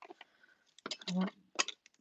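A few short, light clicks and taps as a clear acrylic die-cutting plate and die-cut pieces are handled.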